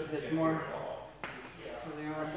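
Indistinct talk from a man, with one sharp click a little over a second in.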